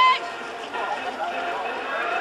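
A man's spoken word ends right at the start, then faint background voices and a steady outdoor murmur.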